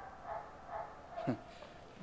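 Faint dog sounds in the background during a pause in speech: a few soft, short calls, then a brief falling one about a second and a quarter in.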